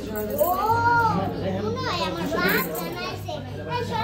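Children's voices in a classroom, with one drawn-out call that rises and falls about half a second in.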